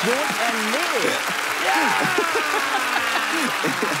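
A man's excited, wordless cheering and exclaiming over the steady hiss of applause.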